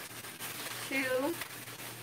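A woman's voice saying "two" once, drawn out slightly, while counting capfuls, over faint room noise with a low steady hum.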